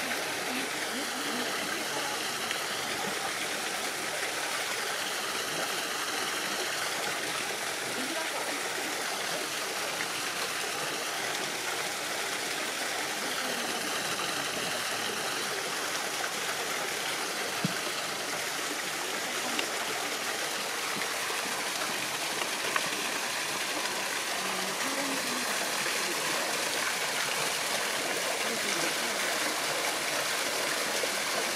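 Steady splashing of running water: a jet spouting from an outdoor tap and falling onto rocks and a stream bed. A few faint clicks stand out briefly in the second half.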